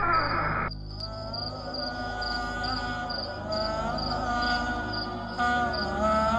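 Crickets chirping in an even rhythm, roughly three chirps a second, under a slow, wordless melody of long held notes that bend in pitch. A voice cuts off abruptly just under a second in.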